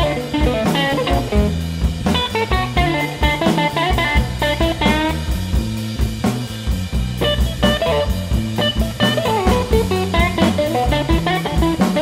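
Electric blues band in an instrumental stretch with no vocals: electric guitar lines, some of them bent, over bass and a drum kit keeping a steady beat.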